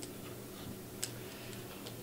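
A quiet pause in speech: faint steady room hum picked up by a handheld microphone, with a few soft isolated clicks, one about a second in.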